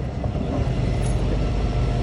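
Boat engine running with a steady low rumble and hum.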